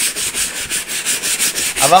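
Brisk back-and-forth hand scrubbing of a wet, quilted faux-leather stool seat with cleaning solution. It makes a rhythmic scratchy rubbing of about six to seven strokes a second as the dirt is worked out.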